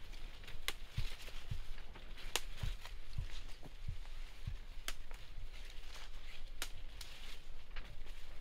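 Tomato foliage rustling as leaves are broken off by hand, with a few sharp snaps of leaf stalks spread through.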